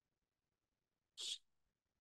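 Near silence broken by one short breath noise from the lecturer, a quick intake lasting about a fifth of a second, a little over a second in.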